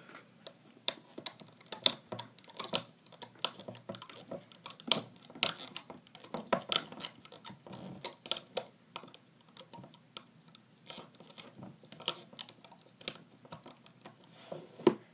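Rubber bands being looped up the pegs of a plastic Rainbow Loom by hand: irregular light clicks and taps, a few each second.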